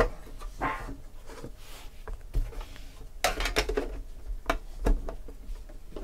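Handling of a trading-card box tin: a sharp click as the lid comes off, then light scrapes and taps as the lid is set aside and the card box is lifted out, with two more sharp clicks near the end.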